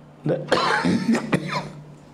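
A man coughing, a rough fit of coughs lasting about a second and a half.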